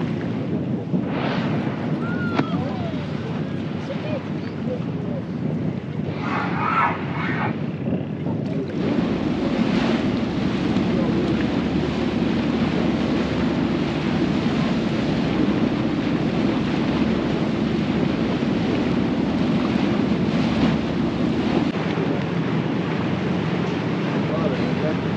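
Wind rushing over the microphone and water noise aboard a moving tour boat, over a steady low drone from the boat's engine that grows heavier about nine seconds in. Faint voices come through briefly about six seconds in.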